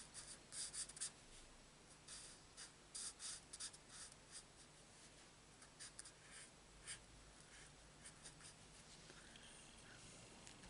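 Faint scratching of a marker nib on cardstock as leaves are coloured in with short strokes, coming in quick clusters in the first few seconds and then more sparsely.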